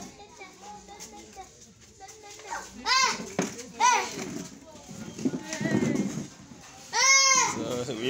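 Children's high-pitched calls: two arching ones about three and four seconds in and a louder, longer one near the end, with low voices in between.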